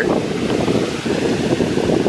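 Wind buffeting the microphone: a loud, low, uneven rumble.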